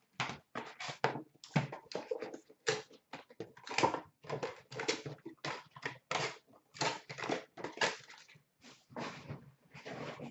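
Foil trading-card pack wrappers being torn open and crinkled by hand: a rapid, irregular run of crackles and rustles.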